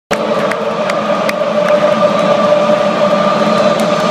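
Large football stadium crowd, a steady loud din with a held note running through it. In the first two seconds there are sharp beats a little over twice a second.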